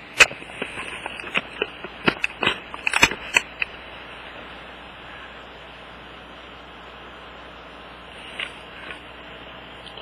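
Handling noise: a quick run of sharp clicks and knocks in the first few seconds as the camera and the circuit board are moved about, over a steady hiss, with two faint ticks near the end.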